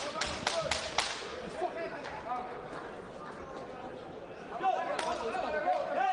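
A quick run of about five sharp smacks in the first second, boxing gloves landing in a clinch, then a single smack about five seconds in, over the murmur of crowd voices in the arena.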